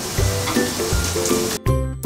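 Onion and garlic sizzling in hot oil in a frying pan, a steady hiss under background music; the sizzle cuts off suddenly near the end.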